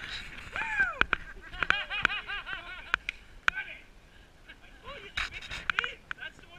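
Excited high-pitched voices whooping and squealing in quick, wordless bursts, with a few sharp clicks between them.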